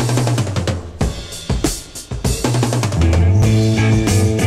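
A 1970 hard rock track opening with a drum kit break: kick and snare hits with bass guitar notes under them. About three seconds in, the full band comes in with held bass and guitar notes over the drums.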